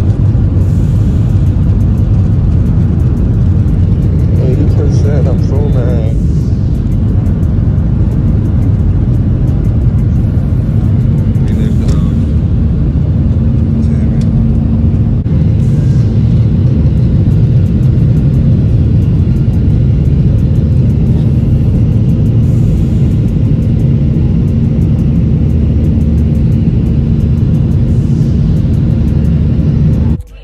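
Loud, steady rumble of a jet airliner heard from inside the cabin, with a steady hum joining about eleven seconds in.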